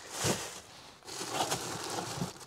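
Plastic carrier bags crinkling and rustling as hands rummage through a cardboard box of spare car parts, with a short handling noise near the start.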